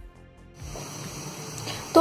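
Soft background music, joined about half a second in by a steady hiss of water at a rolling boil in a steel pot on a gas burner.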